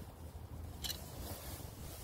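Faint handling noise at a power steering fluid reservoir, with one brief plastic scrape a little under a second in as the dipstick cap is pushed back in and drawn out to read the fluid level, over a low steady hum.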